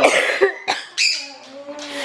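A woman's startled reaction to a fright: several short, breathy, cough-like gasps in the first second, then a faint drawn-out low vocal sound near the end.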